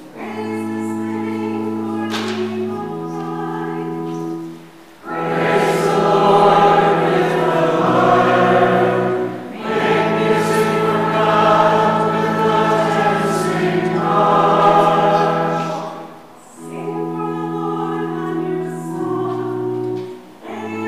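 Pipe organ playing sustained chords, joined from about five seconds in by a congregation singing a sung psalm refrain with the organ, which plays on alone for the last few seconds.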